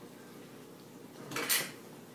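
A brief clatter of dishes and cutlery at a meal table, one short burst about one and a half seconds in.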